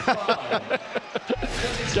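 Commentators laughing, then, about one and a half seconds in, a TV broadcast graphic-transition sound effect: a sudden whoosh with a low rumble under it.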